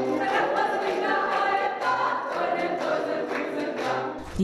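A mixed group of men and women singing together in chorus, with hand claps keeping the beat.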